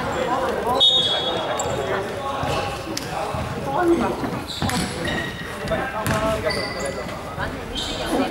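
A basketball bouncing on a wooden gym floor, with voices echoing around a large hall.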